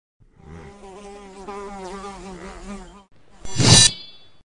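An animated film's fly buzzing, its pitch wavering up and down, for about three seconds. Near the end it is cut off by a loud sword swish that leaves a short metallic ring.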